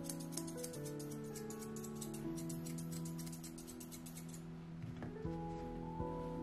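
Grooming shears snipping rapidly through a Scottish terrier's leg hair, several cuts a second, over soft background music with held notes. The snipping stops about two thirds of the way through, leaving the music.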